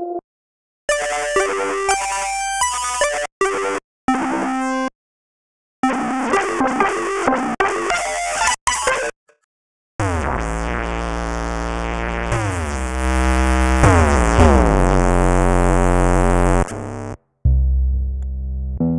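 SEELE Abacus waveshaping software synthesizer playing notes on changing presets, with gritty, noisy tones. At first there are short pitched notes broken by brief silences. From about ten seconds in comes one long dense sound of sweeping pitch patterns over heavy bass, which cuts off suddenly, and a new patch starts just before the end.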